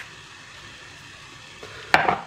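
Faint steady hiss, then near the end a single sharp clack as a filled glass mason jar is set down on a granite countertop.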